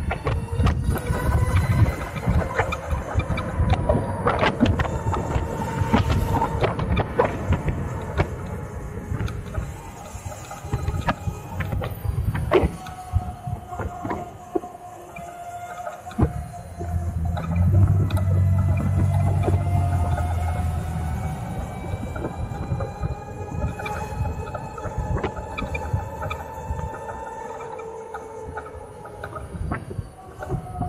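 Harley-Davidson LiveWire electric motorcycle's motor whine, rising and falling in pitch as the bike speeds up and slows in traffic, over wind rumble on the microphone that swells to its loudest a little past the middle.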